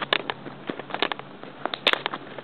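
Clicks and light rustling of a pack of flash cards being handled and opened by hand, in a few quick clusters of sharp clicks.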